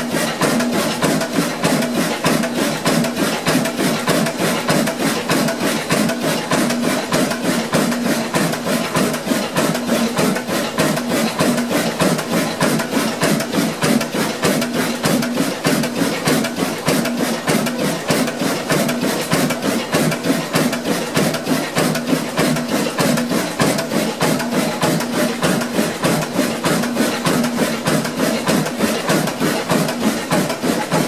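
An old Ruston Hornsby stationary diesel engine running at a steady speed, with an even, rapid mechanical beat of several strokes a second that does not change.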